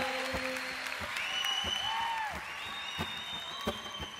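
Music that stops about a second in, followed by applause with scattered sharp pops and a few high, whistle-like tones.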